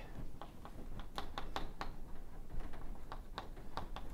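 Chalk writing on a blackboard: an irregular run of short, sharp taps and strokes as words are written.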